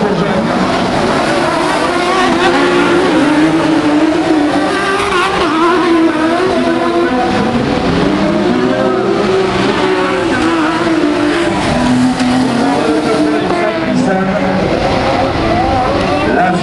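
Several autocross race cars racing together, their engines revving up and down with pitches rising and falling over one another.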